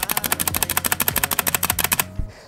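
Spacebar of a TN Void full-size mechanical keyboard with linear red switches, pressed over and over very fast: a rapid, even clatter of key clicks, about eighteen a second. It is the stock spacebar with unmodded stabilizers, before a band-aid mod meant to stop stabilizer rattle.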